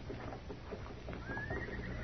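Radio-drama sound effects of a horse: faint hoof clops fading out, then a thin, high whinny that starts about a second in, rises and holds.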